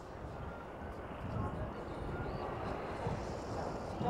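A steady low rumble of background noise with faint voices in it.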